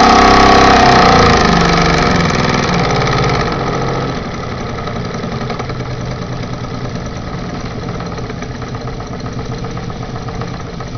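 Mamod toy steam engine running fast: its running note drops in pitch over the first few seconds as it slows, then settles into a quieter, steady, rapid beat.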